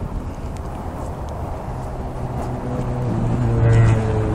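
Outdoor traffic rumble, joined about halfway through by a nearby vehicle's engine hum that grows steadily louder, peaking near the end.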